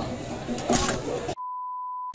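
Edited-in censor bleep: a single steady high-pitched tone that cuts in about a second and a half in, with the rest of the sound track silenced beneath it. Before it, faint voices and the echo of a large hall.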